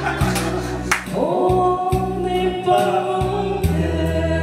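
A man singing into a karaoke microphone over a karaoke backing track with bass and a steady drum beat. About a second in he slides up into a long held note.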